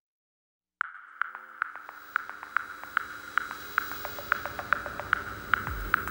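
Opening of a K-indie pop song: after a moment of silence, a high electronic ping repeats about two and a half times a second. A deep kick drum comes in just before the end.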